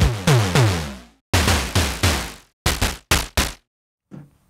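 Moog DFAM snare samples from the Electro drum plug-in, played from a keyboard: three runs of electronic drum hits, each hit with a steeply falling pitch. The last run is shorter and quicker.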